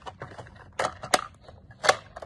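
Doors of a small plastic toy refrigerator pushed shut and the toy handled: a few sharp plastic clicks and knocks, the loudest near the end.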